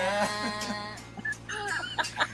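A woman singing a long held note that slowly fades over about a second, followed by a few short broken vocal sounds.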